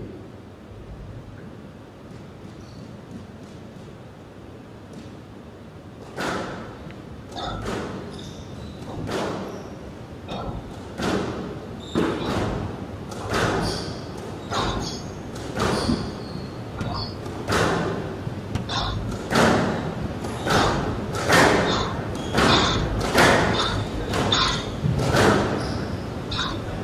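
Squash rally: sharp cracks of the ball off rackets and the walls of a glass-walled court, roughly one a second, each echoing in the hall. They begin about six seconds in, after a quieter stretch.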